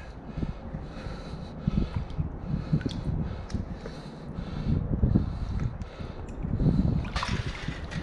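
Shallow water sloshing and lapping as a hand and a wooden-handled hook reach into it to pull up a trap, with a louder splash about seven seconds in. Wind rumbles on the microphone throughout.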